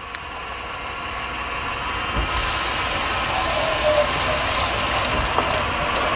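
Kitchen faucet running water over fresh cranberries in a colander, starting about two seconds in and cutting off just before the end. Under it, the steady whir of a stand mixer whipping heavy cream.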